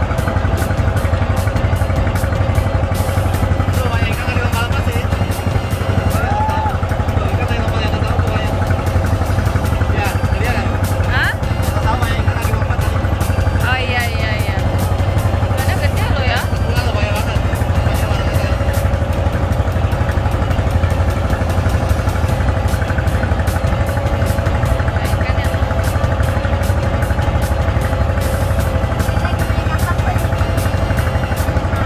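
Wooden passenger boat's engine running steadily at cruising speed while under way, a loud, even low drone.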